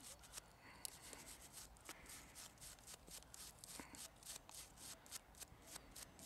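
A toothbrush scrubbing a small, thin, corroded metal find held in the fingers. It makes faint, quick scratching strokes, repeated irregularly several times a second.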